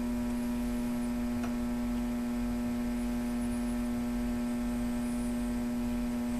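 Steady electrical hum: one strong low drone with a ladder of fainter higher overtones, unchanging throughout, with a faint click about a second and a half in.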